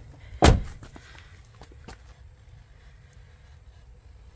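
A single loud thump about half a second in, followed by a couple of faint clicks.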